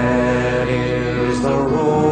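Male voice singing a slow Irish folk ballad, holding one long note and then moving to a second long note a little past halfway.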